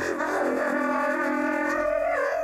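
Wordless improvised singing in a woman's voice: several long held tones layered together, wavering slightly in pitch, blended with a machine-generated version of the same voice.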